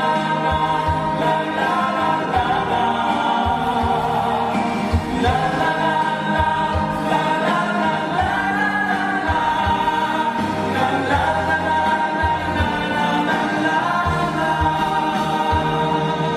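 A male vocal group singing a wordless 'la la la' refrain in layered harmony, with a low beat thumping underneath.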